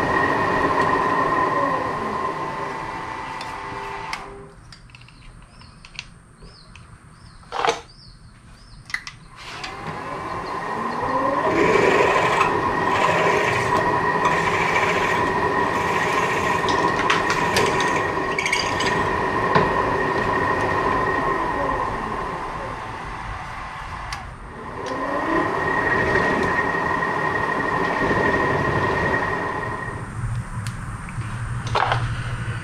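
Milling machine spindle running with a twist drill boring into a steel Morse-taper (MT2) shank, a steady motor whine. The spindle winds down about four seconds in, a few sharp clicks sound in the lull, and it spins back up around ten seconds. It stops and restarts once more near the end.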